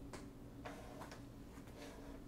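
Marker pen drawing on paper: a few faint, short strokes in the first second.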